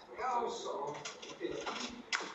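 A person speaking, the words indistinct.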